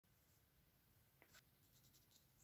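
Near silence with a few faint light ticks and scratches a little past a second in, from fingers handling a pair of cotton swabs close to the microphone.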